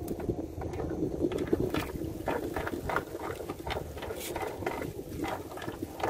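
Wet monofilament gill net being hauled in by hand over the side of a boat: an irregular patter of water dripping and splashing from the mesh, with the netting rustling and crackling as it comes over the gunwale.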